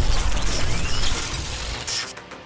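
Sound effects of an animated logo sting: a loud, dense crackling noise over a low rumble, with a short rising sweep about half a second in, dropping away near the end.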